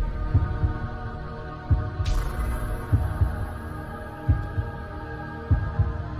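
Intro music for a logo animation: a steady sustained drone under deep, paired low thumps in a heartbeat rhythm, with a whoosh about two seconds in.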